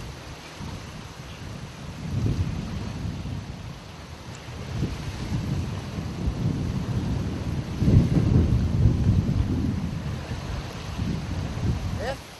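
Wind buffeting the microphone in irregular low rumbling gusts, loudest about eight seconds in.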